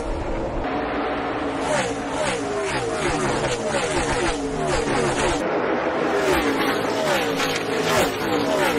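NASCAR Cup Series stock cars' V8 engines at full throttle, passing one after another, each pitch falling as a car goes by. The sound cuts abruptly to another clip of engines about five seconds in.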